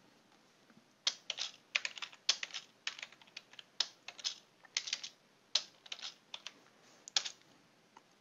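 Typing on a computer keyboard: a run of quick, irregular keystrokes starting about a second in and stopping near the end.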